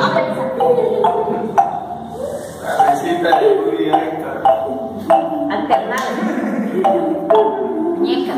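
Wooden marimba struck with mallets, one note at a time at an uneven, exploratory pace, a dozen or so short ringing notes.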